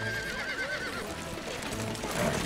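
A horse whinnying, a wavering call in about the first second, with hooves clip-clopping.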